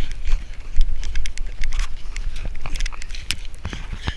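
Irregular crunching and rustling as a person moves on foot through thin snow and past shrubs, picked up by a body-worn camera, with a steady low wind rumble on the microphone.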